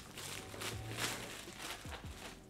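Clear plastic shrink wrap crinkling and rustling in the hands as it is pulled off a cardboard puzzle box, in a series of short crackles.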